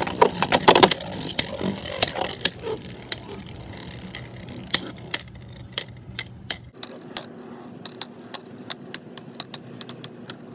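Two Beyblade Burst tops, Inferno Salamander and Union Achilles, spinning in a plastic stadium and clacking together: a quick run of clashes in the first second, then scattered sharp clicks as they knock against each other and the walls. In the last few seconds the playback runs at double speed, so the clicks come faster over a steady spinning hum.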